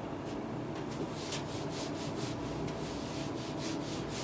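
Cloth or duster wiping handwritten marker working off a writing surface: a dry rubbing with quick back-and-forth strokes, several a second, from about a second in.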